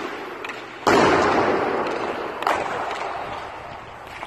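Ice hockey shot: a loud crack of stick on puck about a second in, echoing through the rink. It is followed by a fainter sharp knock a second and a half later.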